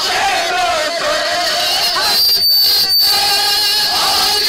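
A crowd of men chanting and shouting together at full voice, many voices overlapping. About halfway through, a high steady whistling tone sounds over them for under a second.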